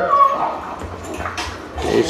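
Boxer dogs play-wrestling, one giving a short whining vocalisation right at the start, with a sharp knock about one and a half seconds in.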